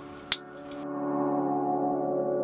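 A single sharp click from the rotary leather hole punch about a third of a second in, then soft ambient music with steady held tones fades in and grows louder.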